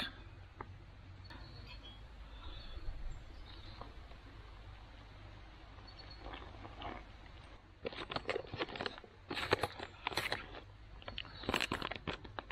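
Crinkling and rustling of a foil-lined dehydrated meal pouch with a long spoon stirring and scraping inside it: dense runs of sharp crackles over the last four seconds. Before that, a quieter stretch in which hot water is poured into the pouch from a metal mug.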